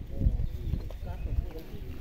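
People talking, with a low rumble and a couple of dull bumps underneath.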